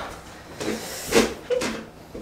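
Footsteps going down a wooden staircase: a few irregular wooden knocks, the loudest about a second in.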